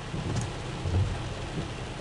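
Steady rain hiss heard from inside a car, with a low rumble underneath that swells briefly about a second in.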